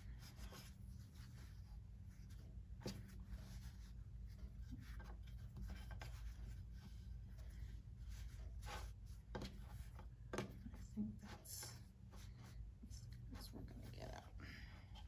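Fingers pressing and pushing pizza dough into a metal baking pan: faint soft taps and rubbing, with scattered light clicks against the pan, over a low steady hum.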